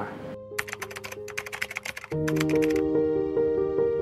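Quick, irregular clicking of keyboard typing for about a second and a half, then soft instrumental music with held notes comes in about two seconds in and carries on.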